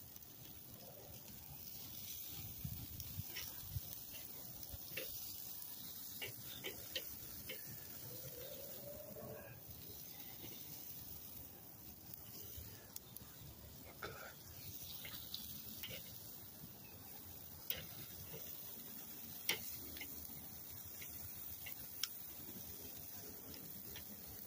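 Chicken wings sizzling faintly on a hot kettle grill, with scattered light clicks of metal tongs against the grate as wings are turned and lifted off.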